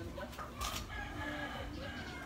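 A drawn-out bird call with a steady pitch, the kind a rooster's crow makes, with a short noisy burst about half a second in.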